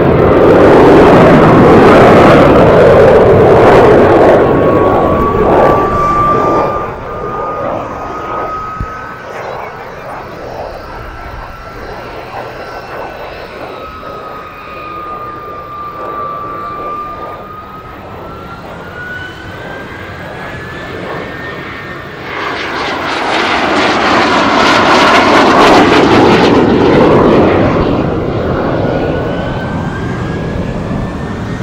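Single-engine jet aircraft flying a display. Its engine roar is loud at first and fades to a distant whine that drifts up and down in pitch, then swells loud again about 23 seconds in as it makes another close pass, easing off near the end.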